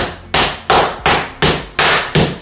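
Wooden rolling pin beating a ball of pastry dough on a wooden pastry board: six hard blows about three a second. The beating works air into the dough so the fried faworki come out crunchy with air bubbles.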